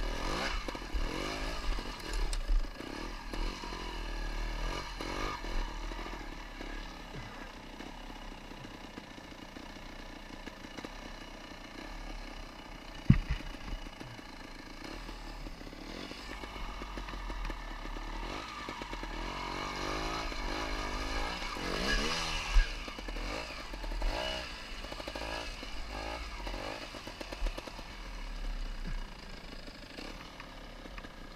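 Trials motorcycle engine running at low speed over rocky ground, its pitch rising and falling as the throttle is blipped, with clattering. A single sharp knock about halfway through.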